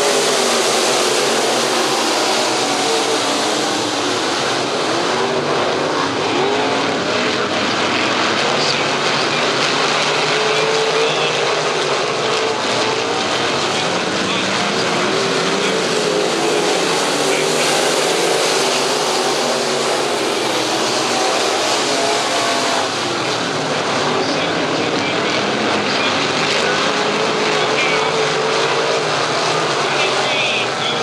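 A pack of B-Mod dirt track race cars' V8 engines running at racing speed, a loud, steady drone of many engines at once. Their notes rise and fall as the cars accelerate and lift through the turns.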